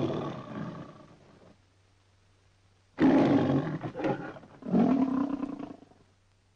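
A lion roaring three times, the MGM logo roar: one long roar that trails off, then after a pause two shorter roars close together. It comes from an old film soundtrack, with a steady low hum underneath.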